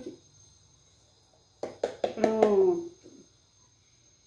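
A few sharp light clicks of a metal spoon against a cardboard carton and the pot, starting about a second and a half in, with a brief murmur of a woman's voice over them.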